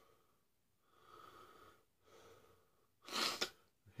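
A man breathing heavily through his mouth against the burn of a Carolina Reaper pepper. There are three breaths; the last, near the end, is a short, sharp blow of air and the loudest.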